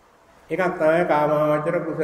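A Buddhist monk's voice intoning a line as a steady, drawn-out chant on a nearly level pitch, starting about half a second in.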